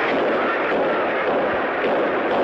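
Gunfire and a large crowd in uproar, on a crackly, muffled old archival recording: the shots of the assassination attempt on the speaker at a mass rally, and the crowd's panic after them.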